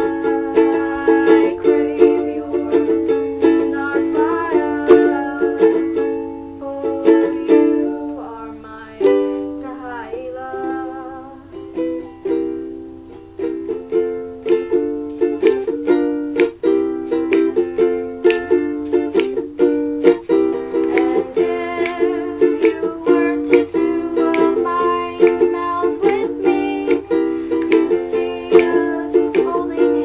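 Ukulele strumming chords steadily. The strumming softens and thins out for a few seconds about a third of the way in, then picks back up at full strength.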